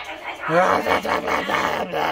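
A man's voice calling out a loud, rough "ratta tat tah!", starting about half a second in.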